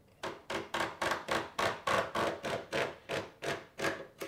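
Knife blade scoring a thin perforated metal sheet along a steel straight edge, in quick repeated scraping strokes about four a second that stop near the end. The sheet is being scored so it can be bent until it snaps.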